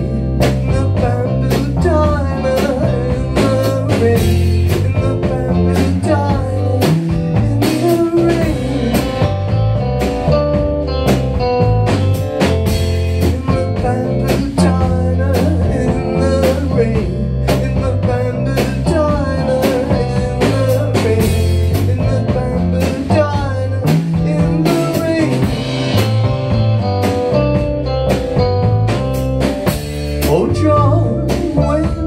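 Live rock band playing: electric guitar lines over a bass guitar and a steady drum-kit beat, heard from within the crowd.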